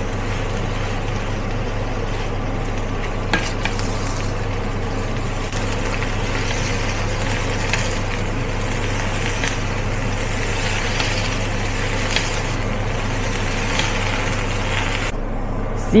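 Julienned raw potato strips sizzling in oil in a wok while a wooden spatula stirs and tosses them, with a few light scrapes against the pan, over a steady low hum.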